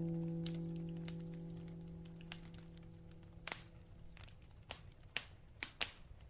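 The last held piano chord of a piece rings out and fades away over the first few seconds. This leaves a quiet gap with a few faint, scattered clicks and crackles.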